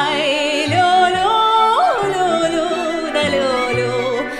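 Music: a female voice sings a slow melody, wavering with vibrato near the start and sliding up between notes, over a line of low bass notes.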